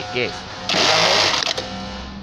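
Industrial electronic bartack sewing machine running a tacking cycle to sew a belt loop onto denim jeans. A loud burst of rapid stitching starts about 0.7 s in and lasts under a second, then drops to a lower steady hum.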